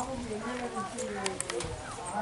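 People talking, with a few short sharp clicks about a second and a half in.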